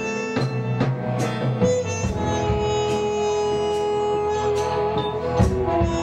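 Live rock band playing an instrumental passage between vocal lines. Strummed acoustic guitar, bass and keyboard hold long notes over steady drum hits.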